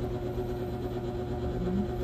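Steady low mechanical hum with a constant tone. A short, low, rising vocal sound comes near the end.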